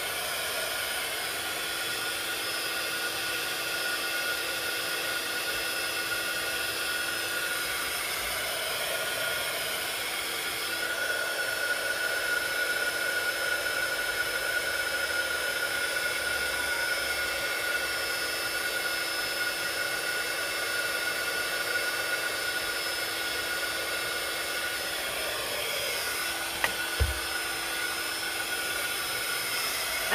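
Handheld craft heat tool (embossing heat gun) running steadily with a fan hiss and hum, drying wet paint on a paper tag. It is a little louder through the middle stretch, and there is one brief knock near the end.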